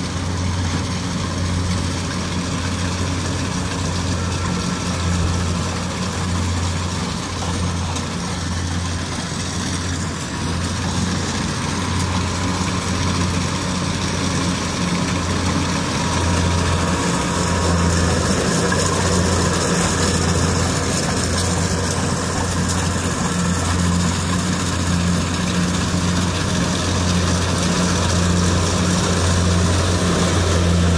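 Kubota rice combine harvester's diesel engine running steadily as it cuts rice, a deep steady hum that grows louder over the second half as the machine draws close.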